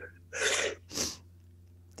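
Two short, noisy breaths from a person moved to tears, the first about half a second long and the second shorter, a moment later.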